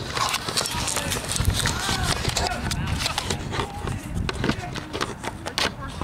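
Indistinct shouts and chatter of players and spectators, over a fluctuating low rumble of wind on the microphone, with scattered small clicks.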